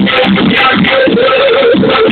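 Loud live band music: a melodic lead over a steady, repeating beat.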